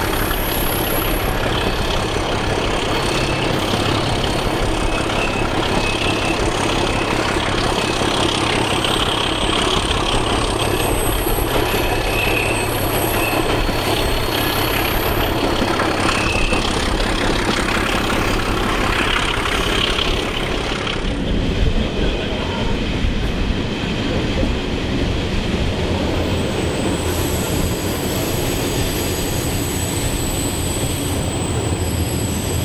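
Diesel engine of a ČKD T478-family (Class 749/751) locomotive working at the head of a passenger train, heard from a carriage window along with the wheels running on the rails, and with some wheel squeal on a curve. About two-thirds of the way through, the sound thins out in the treble.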